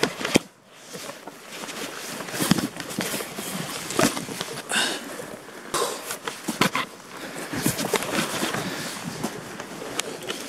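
Boots crunching and scuffing on snowy, grassy ground, with dry grass and clothing rustling, in irregular steps and scrapes.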